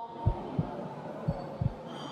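Heartbeat sound effect: a steady run of low thumps, about three a second, over a low hum. It is a suspense cue under the decision countdown.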